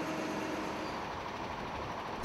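Faint, steady street noise of distant traffic, an even hum with no distinct engine or event standing out.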